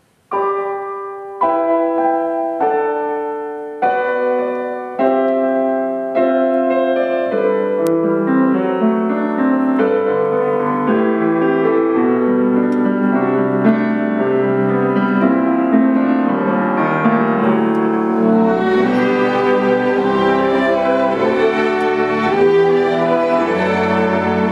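Grand piano playing a solo. It opens with five spaced chords, each struck and left to ring and fade, then moves into a flowing run of notes. The orchestra's strings come in under it, growing fuller near the end.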